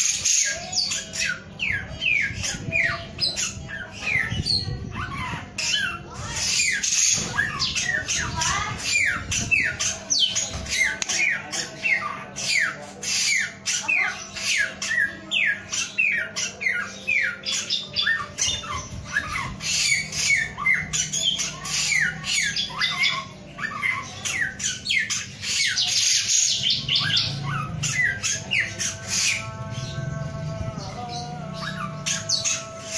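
Caged male samyong songbird singing in full voice: an unbroken run of short, sharp downward-sweeping notes, several a second, with brief pauses twice.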